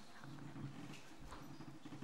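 Faint footsteps on a hard floor, a few soft irregular knocks over a low room hum.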